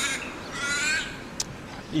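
A crow cawing twice, two harsh, drawn-out calls, the second a little longer.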